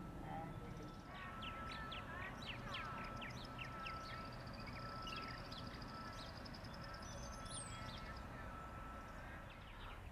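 Birds calling outdoors: a run of short chirps in the first half, then a high thin trill that stops near the end, over a faint steady tone and low wind-like rumble.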